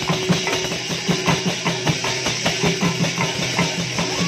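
A group of Odissi mrudanga, the two-headed barrel drums of sankirtan, played by hand together in a quick, even rhythm: deep bass strokes alternating with sharp, higher slaps over a steady high shimmer.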